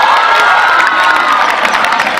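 A crowd of schoolchildren cheering and shouting at once, many high voices overlapping in a loud, steady clamour, as a kabaddi raider is caught by the defenders.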